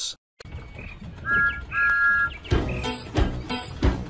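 A two-note train whistle blows twice, a short toot then a longer one, about a second in, over faint bird chirps. Then upbeat theme music with a steady beat starts about two and a half seconds in.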